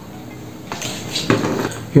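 Hard plastic clicking and rattling as a power adapter and its detachable plug head are handled, in a cluster of short clatters starting a little under a second in.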